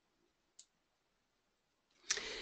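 Near silence: faint room tone, with one brief faint click about half a second in.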